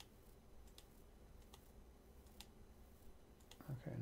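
Faint computer mouse clicks, about one a second, over quiet room hum; a voice begins just before the end.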